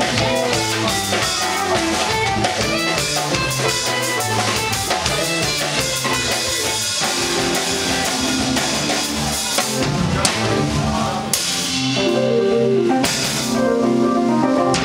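Live instrumental prog-rock band playing: a drum kit, electric guitar, bass and a Nord Stage keyboard running through busy, fast-changing lines, with held chords near the end.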